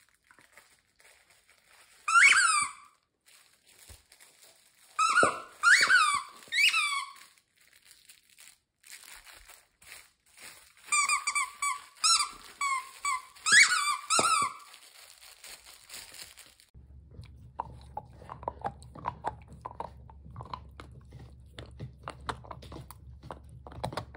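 Dog biting a squeaky toy, the squeaker letting out loud high squeaks: one about two seconds in, three more a few seconds later, then a quick run of squeaks. Near the end the dog is chewing, with soft crunching clicks over a low hum.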